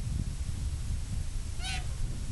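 A single short, high animal call about one and a half seconds in, lasting about a fifth of a second, over a steady low rumble of wind on the microphone.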